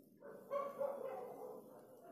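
A rooster crowing faintly in the distance: one drawn-out call of about a second and a half.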